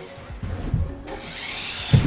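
Small electric motor of a cheap toy remote-control truck whirring, setting in about a second in, with a thump near the end.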